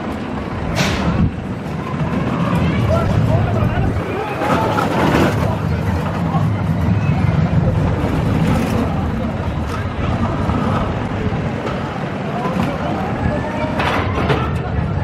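Gerstlauer spinning roller coaster car rumbling steadily along its steel track, with people's voices over it.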